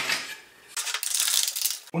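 The aluminium L-profile of a Metabo TS 254 table saw's rip fence being slid along the fence rail by hand: metal scraping on metal with light clinks. The scraping fades out in the first half second, then starts again just before a second in and runs for about a second.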